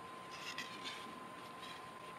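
Faint rustling of a long strip of thin toilet paper being pulled out and unfolded by hand, a few soft crinkles about half a second to a second in.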